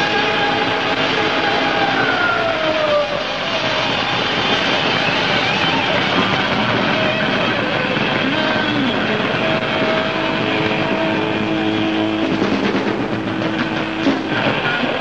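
Live heavy metal band playing a loud, distorted instrumental passage in a rough concert recording: a sustained electric guitar note slides down in pitch over the first few seconds, over a dense wash of guitar, bass and drums.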